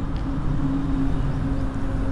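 A motor vehicle's engine running steadily, a low hum that slowly grows louder.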